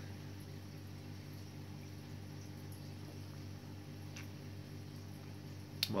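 Steady low hum in a small room, with a faint click about four seconds in and another near the end.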